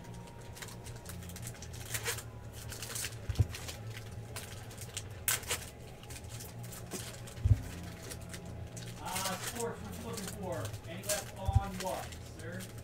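Trading card packs being opened and sorted by hand: foil wrappers crinkling and tearing and cards sliding against each other, with a few sharp knocks on the table, the loudest about seven and a half seconds in.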